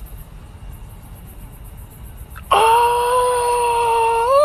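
Faint crickets chirping, then about two and a half seconds in a loud, long, steady scream-like wail starts suddenly and holds one pitch.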